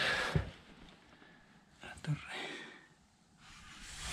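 Only speech: a man says a couple of short words in Spanish, with faint background between them.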